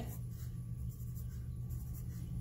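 Wooden pencil writing on a sheet of paper: a run of faint, short strokes over a steady low hum.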